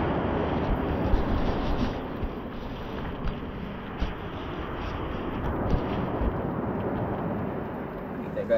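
Gusty storm wind rumbling on the microphone over a steady rush of rain, heaviest in the first two seconds, with a few faint clicks.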